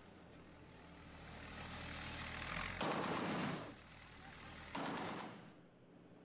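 Field audio of an armoured military vehicle running, its sound swelling, with two short loud bursts of gunfire, one about three seconds in and another near the end.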